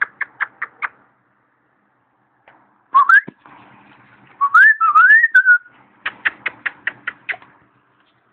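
A person calling puppies with quick runs of kissing sounds, about seven a second, and whistles: a short rising whistle about three seconds in, then a longer wavering one.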